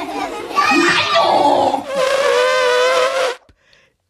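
A woman's voice, a puppeteer speaking for a character: a strained, exaggerated exclamation, then one long high cry with a wavering pitch that ends abruptly about three and a half seconds in.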